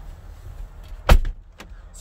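A Jeep Wrangler door giving one loud thump about a second in, followed by a lighter click.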